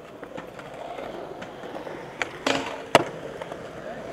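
Skateboard wheels rolling on concrete. A couple of board knocks come a little past two seconds in, and a loud, sharp clack of the board striking just before three seconds.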